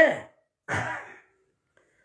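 The tail of a man's spoken word, then about half a second later a single audible breath of about half a second between his phrases.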